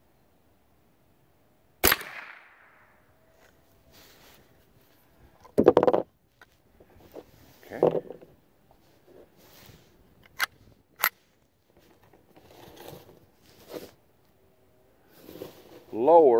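A single shot from a scoped Ruger 10/22 semi-automatic rifle firing .22 LR, a sharp crack with a short ringing tail about two seconds in. Later come two sharp clicks of the rifle being handled.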